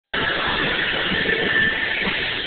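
Steady din of roller skate wheels rolling on a rink floor, with no single sound standing out.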